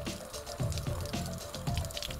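Background music with a steady beat, over the hiss and patter of water spraying from a garden hose onto a plastic chemical-resistant suit.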